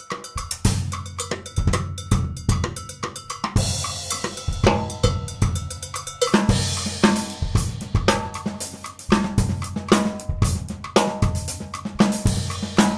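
Drum kit played in a continuous groove, with kick drum, snare, hi-hat and Turkish cymbals. A cymbal crash rings out about three and a half seconds in.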